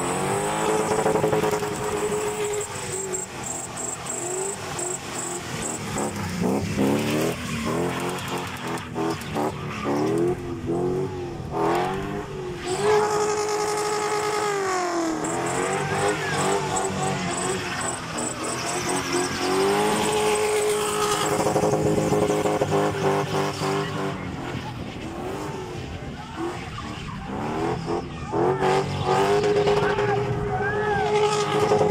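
Car engine revved hard during a spinning display, its pitch rising and falling and held high for stretches of a few seconds, with tyres squealing and skidding on tarmac.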